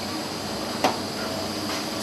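A single sharp knock a little under a second in, over a steady background hiss.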